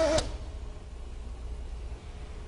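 A fiber blowing machine's whine stops with a click a fraction of a second in, leaving a low steady hum.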